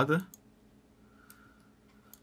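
A few faint, short clicks of a computer mouse over quiet room tone.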